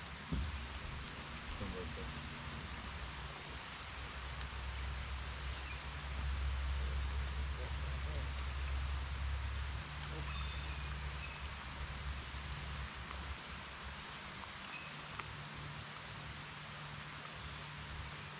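Steady rain falling on the lake surface and the boat, with a low steady hum underneath that swells for a few seconds in the middle, and a few faint sharp clicks.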